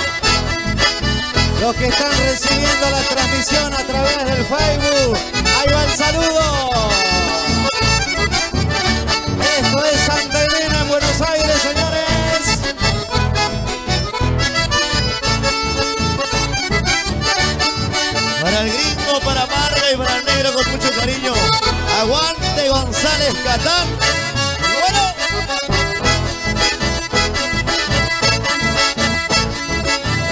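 Live chamamé from an accordion-led folk band: the accordion carries the melody over a steady, even bass beat, played loud and without a break.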